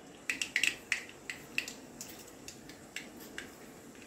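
Mustard seeds popping and crackling in hot oil in an iron kadhai: irregular sharp pops, most of them in the first couple of seconds and fewer after. The crackling shows the oil is hot enough for the tempering.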